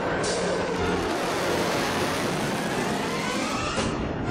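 Military jet aircraft flying past overhead, a continuous rushing jet noise that comes in suddenly at the start and cuts off just before the end.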